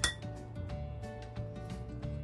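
A single bright clink of kitchenware, glass or metal, right at the start, ringing briefly over background music with a steady beat.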